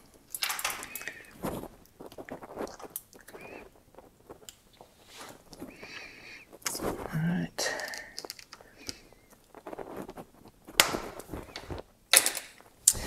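Bicycle roller chain being handled while a master link is fitted: scattered light metallic clicks and rattles of chain links and pliers, with one sharp click near the end.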